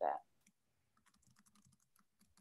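Faint typing on a computer keyboard: a quick, uneven run of key clicks starting about a second in.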